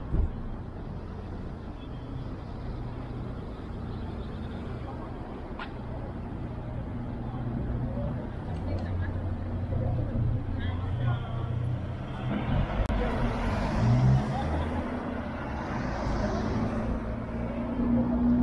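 City street traffic at an intersection: car engines running with a steady low hum, and cars passing, the traffic growing louder in the second half. People talk nearby over the traffic.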